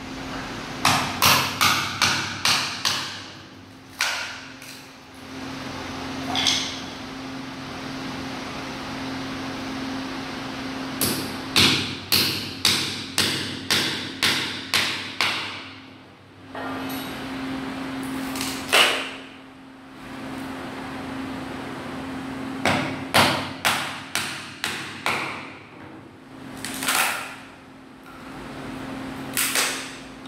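Claw hammer striking a steel chisel to cut old solid-wood parquet strips out of a floor. The blows come in quick runs with pauses between, over a steady low hum.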